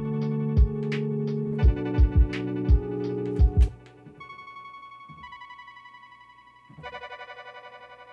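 Lo-fi beat playing back: sustained keyboard chords pumping under irregular kick-drum hits. About three and a half seconds in, the drums and low chords drop out, leaving quieter high chords with a fast pulsing flutter that change chord twice.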